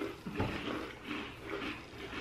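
Chewing and soft mouth sounds of people eating Emperador sandwich cookies, with a few faint murmurs.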